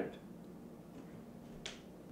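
A single short, sharp click about one and a half seconds in, over quiet room tone with a faint steady hum.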